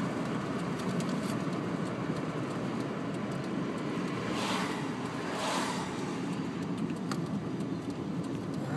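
Steady road and engine noise heard from inside a moving car's cabin, with two brief swells of hiss about halfway through.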